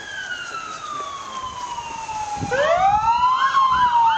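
Emergency vehicle siren wailing: a long tone falls slowly for about two and a half seconds, then sweeps sharply up and starts to fall again.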